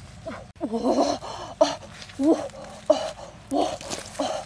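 A string of short vocal sounds, several a second, each bending up and down in pitch.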